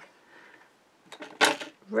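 A brief, sharp handling clatter about one and a half seconds in, as a roll of red double-sided tape is picked up off a cutting mat, after a second of near quiet with a few faint ticks.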